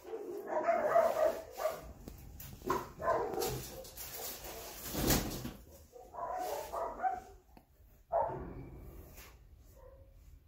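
A dog barking in four short bouts, with a couple of sharp knocks in between.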